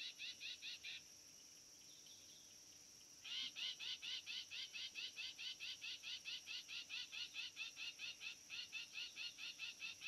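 A rapid series of short, rising chirps, about four a second, from a calling animal. The chirps stop about a second in, start again after about two seconds and carry on. A steady, high-pitched hiss lies under them.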